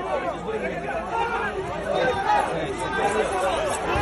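A crowd of many voices talking and calling out over one another, with no single voice standing out.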